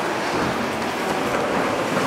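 Steady city street noise: a continuous hiss of traffic on wet pavement.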